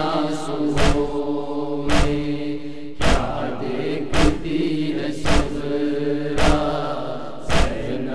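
A crowd of mourners chanting a noha on long held notes, with sharp unison chest-beating strikes (matam) about once a second, seven in all.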